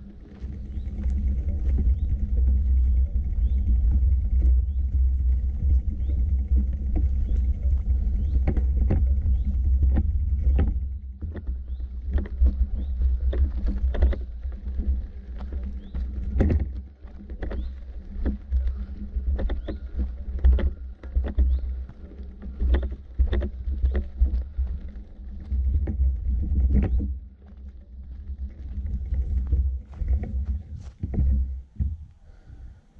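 Footsteps on a dirt forest path, a stroke every half-second to second or so, over a steady low rumble on the microphone.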